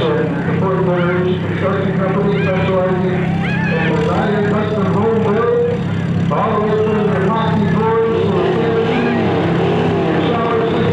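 Front-wheel-drive figure-eight race cars' engines idling steadily while stopped together on the track, with indistinct voices over the top.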